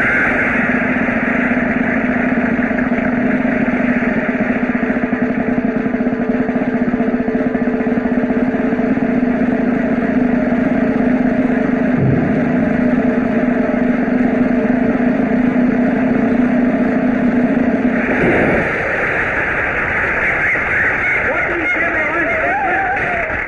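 Motorcycle engines running in a steel-mesh globe-of-death cage: a loud, steady drone that cuts off about three-quarters of the way through, with music starting near the end.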